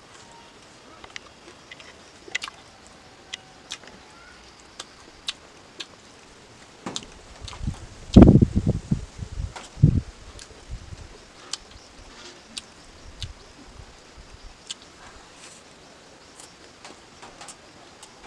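Close-miked chewing: scattered short clicks and smacks as a mouthful of rice and chewy grilled pork pickle is eaten. A louder low muffled rumble comes for about three seconds around eight seconds in.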